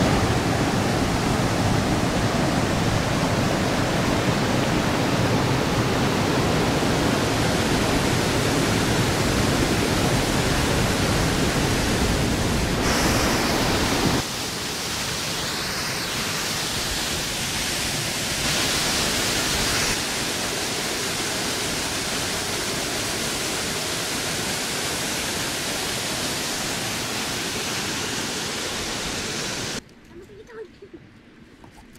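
A waterfall plunging into a pool: a steady rush of falling water. About halfway through, the sound drops abruptly to a lighter, less heavy rush that continues unchanged.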